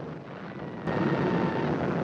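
Battle sound effect of distant artillery fire: a low, rough rumbling that jumps suddenly louder about a second in.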